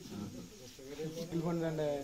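People's voices talking indistinctly, loudest in the second half, over a light background hiss.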